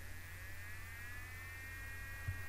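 A faint high-pitched whine made of several close tones that rise slightly in pitch and then hold steady, over a low steady hum.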